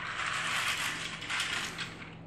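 Small plastic LEGO toy parts rattling and clicking against each other in a rapid, continuous clatter that fades out near the end.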